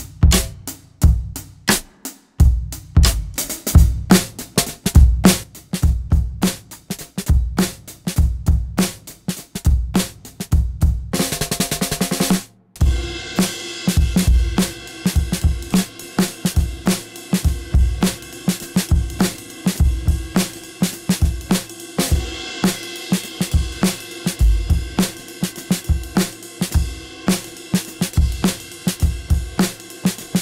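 Drum kit groove played through an Evans Sensory Percussion trigger system, with drum hits sounding alongside triggered electronic sounds. About eleven seconds in, a very fast roll-like stutter lasts about a second and a half and cuts off suddenly. From then on, sustained pitched tones sound under the beat.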